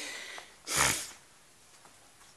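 One short, sharp breath through the nose, about three quarters of a second in, then near silence.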